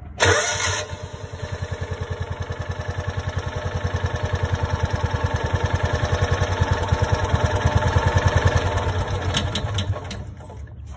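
Kawasaki FE290D single-cylinder engine cranked by its starter, catching within the first second and then running with an even, rapid firing beat that grows gradually louder. The engine has a failing ignition coil that makes it lose spark, run and die.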